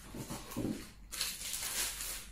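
Plastic wrapping and cardboard packaging rustling and crinkling as an item is unpacked by hand, loudest in the second half.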